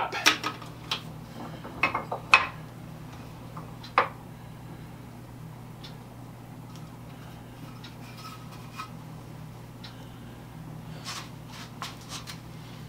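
A few sharp metal clicks and knocks from a cast-iron bench vise being worked to clamp a small rotisserie motor housing. The loudest click comes about four seconds in, and a few lighter clicks come near the end, over a steady low hum.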